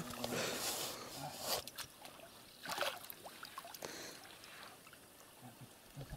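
Water sloshing around a man standing waist-deep in a pond, with two short louder splashes about one and a half and three seconds in.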